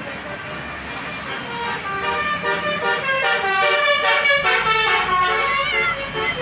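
Tour bus's Basuri musical air horn (telolet horn) playing a multi-note melody of several horn tones sounding together, stepping from note to note; it starts about a second in and grows louder as the bus passes, over the bus's engine.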